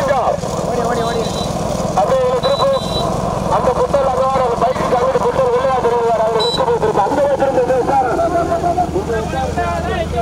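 Men's voices calling out without a break over a vehicle engine running steadily, with a few short high beeps.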